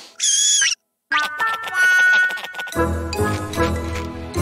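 A short high-pitched wavering squeak, a cartoon sound effect, then a moment of silence before a tinkling children's music jingle starts with a long held note and fills out with a bass line about three seconds in.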